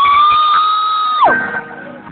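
Live electric guitar holding one loud, high sustained note through the PA. The note slides up into pitch at the start, holds steady, then dives sharply down in pitch about a second and a quarter in.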